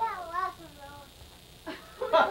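A high, wavering voice-like call lasting about a second, its pitch rising and falling several times. Voices start up near the end.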